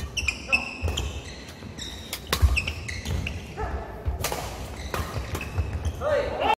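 Badminton doubles rally: rackets striking the shuttlecock in a quick run of sharp hits, with court shoes squeaking briefly on the wooden floor between strokes.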